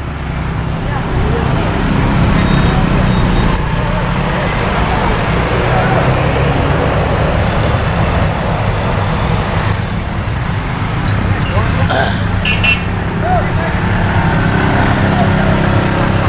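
Heavy vehicle engines running steadily at low revs as a medium bus works round a steep uphill hairpin, with motorcycles passing and scattered shouted voices.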